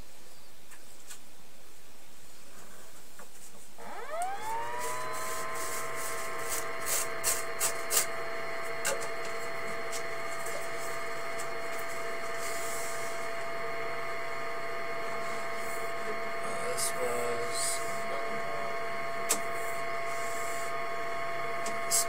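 A motor starts about four seconds in, whining quickly up to speed and then running at a steady pitch, with a scattering of short clicks and knocks over it.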